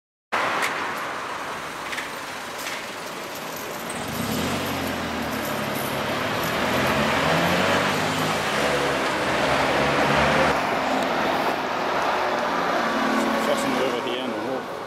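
Town road traffic: a motor vehicle drives past, its engine hum building from about four seconds in and loudest around ten seconds, over steady road noise.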